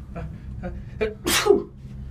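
A person sneezing once, a short voiced intake and then a sharp hissing burst about a second in, over a steady low hum.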